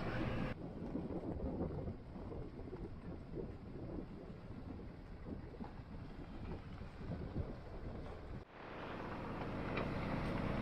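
Low, steady rumble of a pickup truck rolling slowly, with wind on the microphone. The sound drops out abruptly about eight and a half seconds in and comes back slightly brighter.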